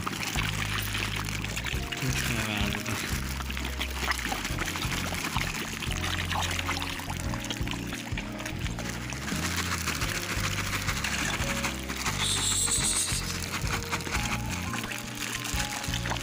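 Background music over water splashing and sloshing, with many small quick splashes as carp and koi churn at the surface, snapping up floating food pellets.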